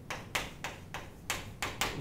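Chalk writing on a chalkboard: a quick run of about seven short taps and scratchy strokes as a word is written.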